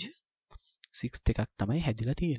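A voice speaking, after a short pause broken by a couple of faint clicks.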